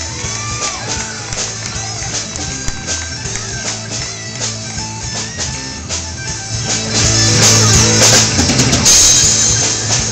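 Live rock band: electric guitar solo over drums and bass, the whole band getting louder about seven seconds in.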